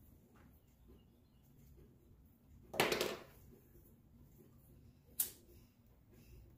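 A tobacco pipe being lit with a lighter: quiet room tone, broken by a short rushing burst about three seconds in and one sharp click about five seconds in.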